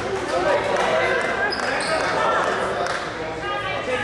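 Basketball bouncing on a hardwood gym floor amid spectators' voices, echoing in a large gym.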